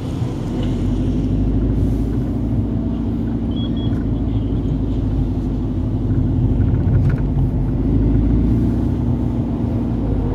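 Volkswagen Golf GTI Edition 35's turbocharged four-cylinder engine running at low revs, heard from inside the cabin as the car rolls slowly: a steady low rumble that swells slightly late on.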